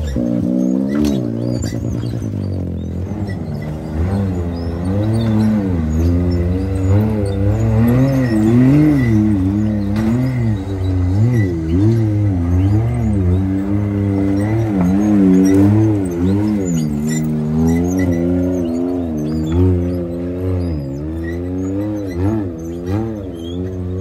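Can-Am race UTV engine revving up and down in repeated short throttle bursts while rock crawling, its pitch rising and falling about once a second.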